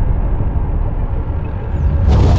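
Deep rumble of a cinematic logo-reveal sound effect, the tail of a shattering impact, slowly easing off. A faint falling whoosh near the end leads into the next hit.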